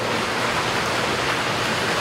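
Steady background noise: an even hiss with no tones, beats or knocks.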